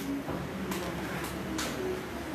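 Quiet room tone with a faint steady hum and two soft, brief noises, one about a third of the way in and one near the end.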